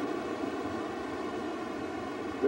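Steady rushing background noise on an old camcorder recording, with no separate events.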